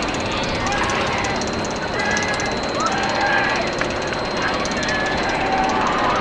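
Roller coaster train running along its steel track with a fast, continuous rattling clatter.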